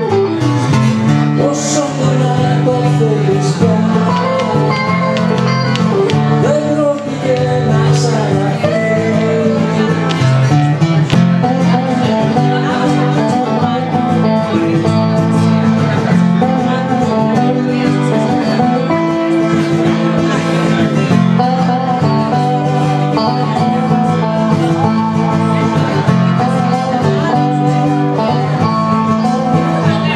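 Acoustic and electric guitars played live together: a steady chordal accompaniment with a melody moving above it, without a break.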